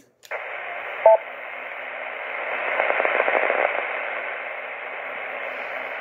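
Steady FM hiss from a Kenwood TS-480HX transceiver receiving the distant 10-meter VE3MMX repeater, a weak signal full of noise that swells in the middle. About a second in, a short two-note beep sounds through the radio's speaker.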